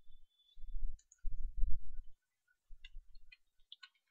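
Computer keyboard keys tapped in quick irregular runs as a phone number is typed, giving short clicks with dull low thuds.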